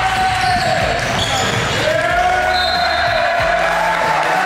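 Live basketball game sound in a gym: sneakers squeaking on the hardwood in long bending squeals, the ball bouncing, and players' voices calling out.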